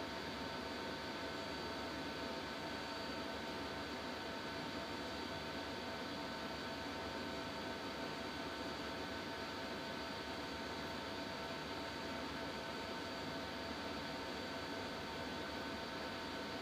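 Steady background hiss with a few faint, steady high whining tones, unchanging throughout: the room tone of a desk microphone.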